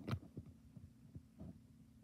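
Faint handling of a plastic DVD case: a sharp tap just after the start and a few softer knocks later, over a steady low hum.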